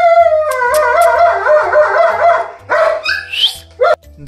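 Young German Shepherd puppies whining and squealing, with short rising yelps, over background music.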